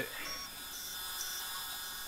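Hercus PC200 CNC lathe running with its spindle turning, giving a steady whine of several high tones.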